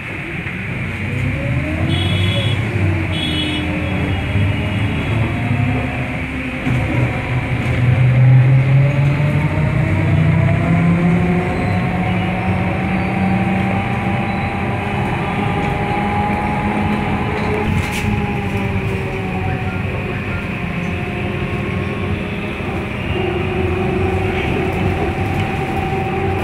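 Cabin noise of a city bus on the move: engine and road rumble throughout, the engine note climbing steadily as the bus gathers speed and dropping again about two-thirds through, where there is a sharp knock. Two short high beeps sound near the start.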